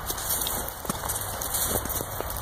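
Footsteps crunching in fresh snow, a run of soft, irregular crackles and crunches.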